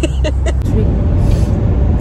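Inside a moving Peugeot car: steady low engine and road rumble, with a few brief voice fragments in the first half-second.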